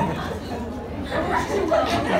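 Overlapping voices of a group chattering in a large, echoing hall, recorded on a phone.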